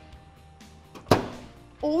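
A single sharp hit with a short decaying tail about a second in: an editing transition sound effect, over a faint background music bed.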